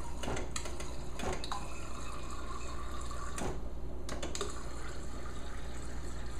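Refrigerator door water dispenser running steadily into a plastic cup held up under it, with a few small clicks along the way.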